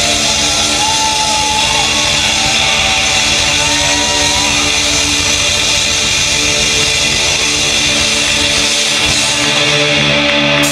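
Rock band playing live, heard through the club PA from among the audience: distorted electric guitars over drums, loud and dense. High notes glide up and down over the first few seconds.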